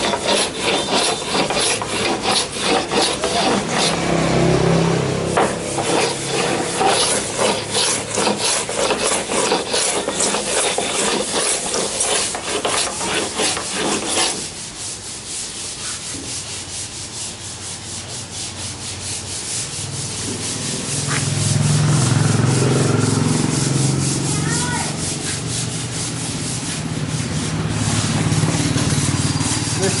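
Hand sanding on wood: quick, dense rubbing strokes for about the first half, stopping abruptly about halfway through. The rest is a quieter stretch in which a low steady hum comes up in the last third.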